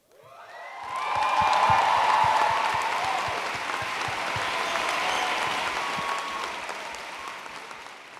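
Audience applauding at the end of a spoken-word poem. The applause swells over the first second or so, holds, then fades out near the end.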